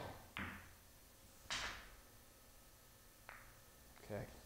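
Pool cue tip striking the cue ball with side spin, then a click as the cue ball hits the object ball a moment later. A louder knock follows about a second and a half in, and a light click just after three seconds as the cue ball taps a ball in the row along the rail.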